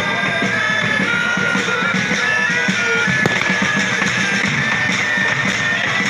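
A marching pipe band playing: bagpipes hold a stepping melody over a steady drone, with bass drum and snare beating beneath.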